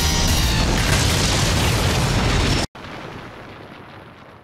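Anime sound effect of a building crashing down: a loud, heavy rumbling crash over background music, cutting off abruptly about two and a half seconds in to a much quieter low rumble.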